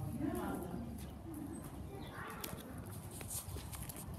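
Hoofbeats of a horse walking on the soft dirt footing of an indoor arena, a few light clicks through the second half, with faint voices.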